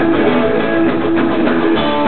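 A pop-punk rock band playing live: electric guitars, bass guitar and drums in a loud, steady instrumental passage with no vocals.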